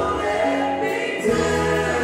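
Live rock band playing, with electric guitars, bass and drums under several voices singing together.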